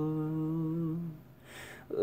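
A young man humming a long, low held note that fades out a little past a second in, then a quick breath in just before the end.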